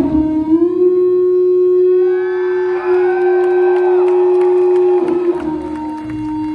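Amplified electric bass played solo: a high note slides up slightly and is held for about four seconds while higher tones sweep up and down above it, then it falls back to a lower note about five seconds in.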